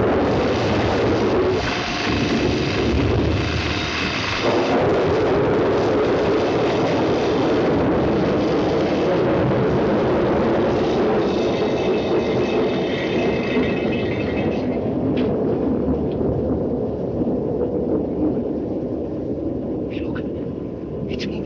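Continuous rumble of a thunderstorm mixed with the buzz and crackle of electrical laboratory apparatus, a higher electric hum standing out over it twice. It thins out and eases near the end.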